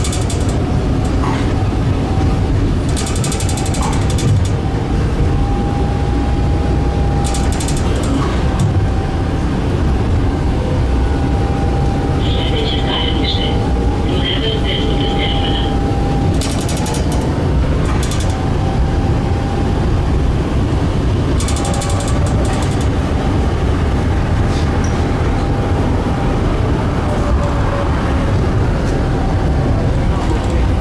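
Tram running along street track, heard from on board: a steady low rumble of wheels on the rails with a faint steady whine, broken several times by short bursts of rattling. Two brief high-pitched squeaks come around the middle.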